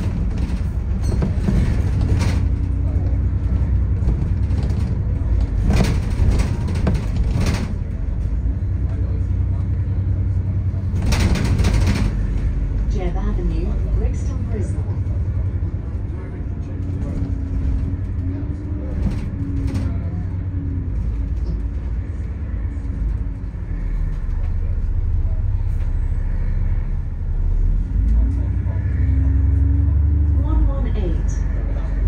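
Double-decker bus in motion, heard from inside: a steady low rumble of engine and road, with a drone that rises and falls as the bus changes speed, and a few knocks and rattles from the body in the first half.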